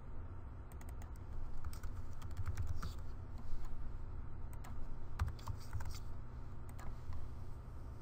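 Typing on a computer keyboard: scattered, irregular keystrokes.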